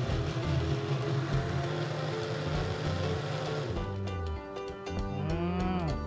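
Small personal blender motor running as it purees chopped tomatoes into a smooth sauce, then stopping about four seconds in. Background music plays throughout, and a man's short "mm" comes near the end.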